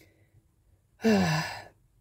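A woman sighs once about a second in: a breathy out-breath with a little voice in it that falls in pitch and fades away, lasting under a second.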